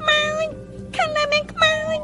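A high-pitched voice in a few short drawn-out syllables, some falling in pitch, over soft background music.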